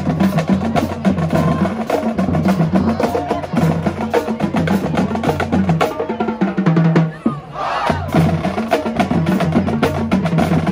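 High school marching pep band playing brass over a drumline of snare and bass drums, with a steady beat. The band drops out briefly about seven seconds in, then comes back in.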